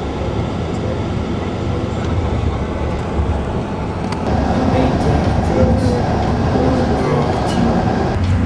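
Steady road rumble and engine drone inside a moving bus on the highway, growing slightly louder about halfway through, with faint voices in the background from then on.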